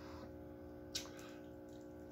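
Faint handling of a boiled crawfish's soft shell, broken apart by hand, with one short sharp crack about a second in, over a low steady room hum.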